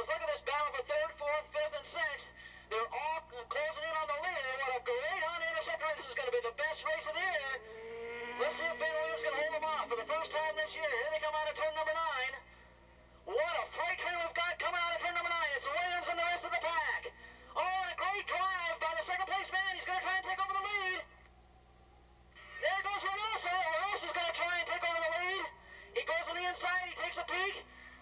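A man's voice commentating nearly all the way through, thin and narrow-sounding like a public-address or radio feed, with a few short pauses.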